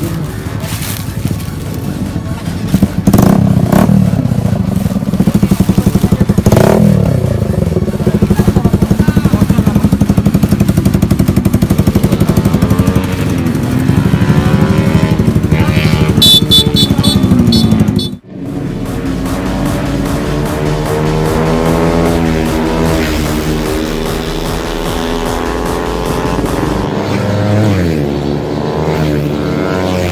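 Sport motorcycle engines running close by, revving loudly at times. After a cut, several motorcycles accelerate along a track, their engine pitch rising and falling as they pass.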